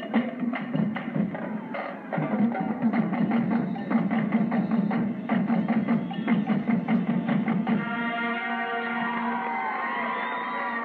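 Marching band drumline, snare drums and tenor drums, playing a fast, dense rhythm; about eight seconds in, the wind section comes in with a held chord. The sound is dull and narrow, played back from an old videotape through a TV.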